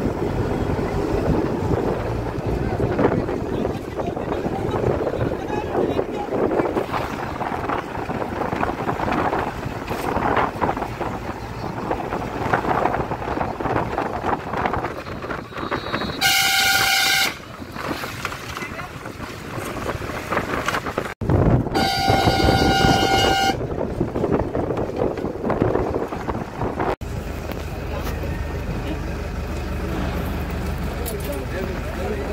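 A vehicle horn sounds twice, a one-second toot about halfway through and a longer blast of about a second and a half some five seconds later. Both are heard over a steady rushing noise like wind and movement on the microphone.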